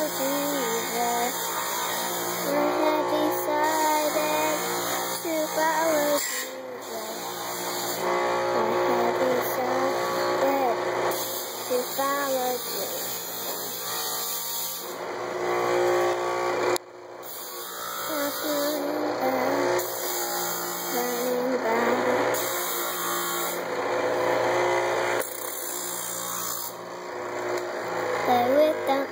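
Power grinder running against steel coil spring, shaping a knife blade, with a brief drop-out about 17 seconds in. A child sings softly over it.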